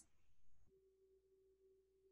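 Near silence, with a very faint steady tone starting about two-thirds of a second in.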